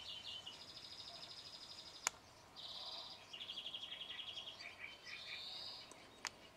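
Songbirds singing in a string of high, fast trills, one phrase of rapidly repeated notes after another, at a few different pitches. A single sharp click comes about two seconds in.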